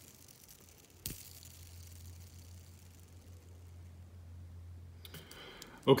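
Faint room tone. A single click comes about a second in, followed by a steady low hum that stops about a second before the end.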